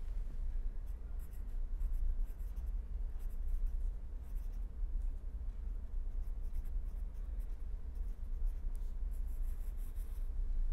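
Pen writing on paper in clusters of short scratching strokes, over a steady low hum.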